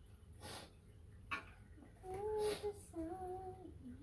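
A child's voice singing a short sing-song phrase of two held notes in the second half, softly. A brief rustle and a click come in the first second and a half.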